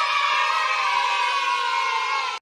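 A crowd cheering in one long held shout, a stock cheering sound effect, sinking slightly in pitch.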